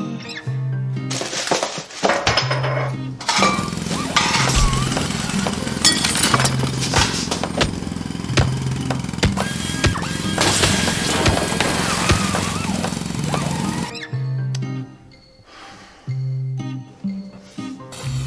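Gentle background music with a repeating bass line, joined from about three seconds in by a long, dense racket of overlapping bangs, crashes and smashing: exaggerated kitchen-clatter sound effects. The racket cuts off suddenly a few seconds before the end, leaving the music alone.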